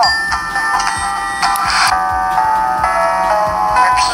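A light-up Barbie doll's built-in speaker playing a short electronic tune of held notes that change about every half second.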